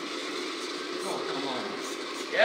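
Faint background talk over a steady hiss of room noise.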